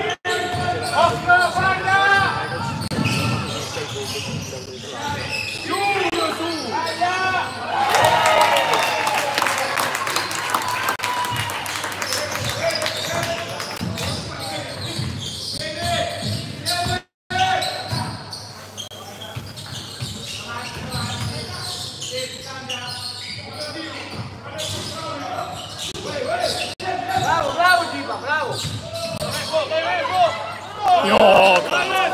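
Sounds of a youth basketball game in a gymnasium: the ball bouncing on the hardwood and players and spectators calling out, with a louder burst of cheering and clapping about eight seconds in after a basket. The sound cuts out for a moment about seventeen seconds in.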